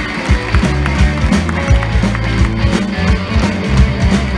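Live rock band playing an instrumental passage: a steady drum-kit beat with electric bass and electric guitar.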